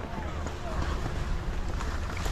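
Skis sliding over snow while being pulled up a surface ski lift, with a steady wind rumble on the microphone and faint distant voices.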